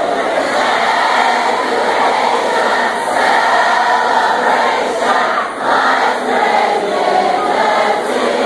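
A large crowd of high-school students singing their school alma mater together as a mass choir.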